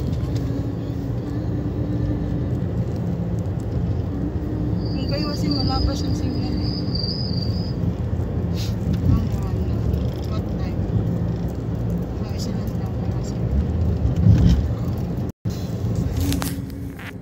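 Steady low rumble of a car's engine and tyres on the road, heard from inside the cabin while riding.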